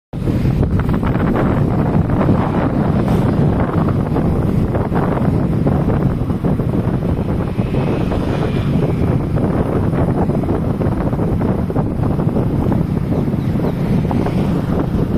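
Wind buffeting the microphone of a camera carried on a moving vehicle: a steady, loud low rumble of rushing air mixed with vehicle and road noise.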